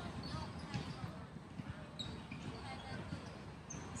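Faint outdoor background: distant, indistinct voices over a low, uneven rumble of ambient noise.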